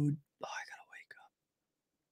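A man's voice: the end of a spoken word, then a brief whispered mutter about half a second in, then near silence.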